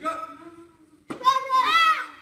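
A young child's voice: a short sound at the start, then about a second in a loud, high-pitched cry that is held and then rises and falls in pitch.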